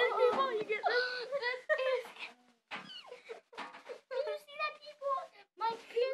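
Children's voices, high-pitched and sliding up and down in pitch, in short bursts of talk with brief gaps.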